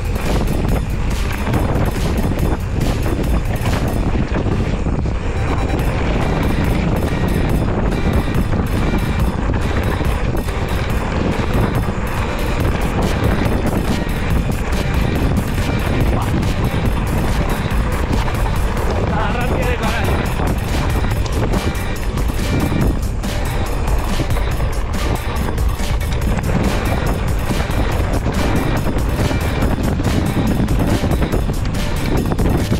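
Mountain bike running fast over a loose gravel track: steady, loud tyre roll and rattle from the frame, with many small clicks of stones under the tyres, and wind buffeting the microphone.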